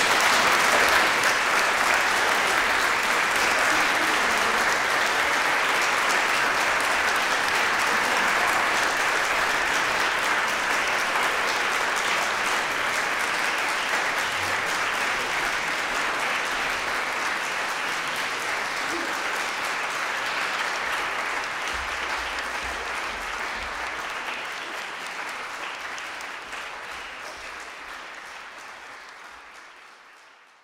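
Audience applause, a steady clatter of many hands that holds level for the first half and then slowly dies away over the last ten seconds or so.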